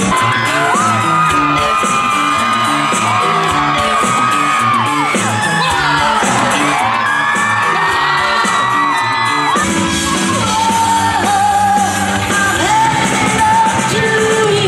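Live band playing loud rock music with a singer holding long, gliding notes, heard from within a festival crowd. The music changes abruptly about two-thirds of the way through.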